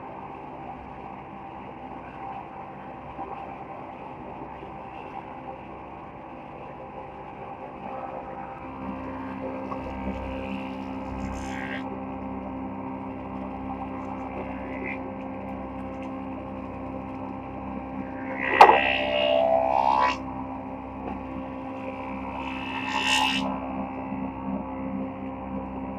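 Woodworking machinery running with a steady multi-tone hum, a lower hum joining about a third of the way in. About three-quarters of the way through, a board feeding into a planer brings a loud burst of cutting with a shifting whine lasting a second or two, and a shorter burst follows near the end.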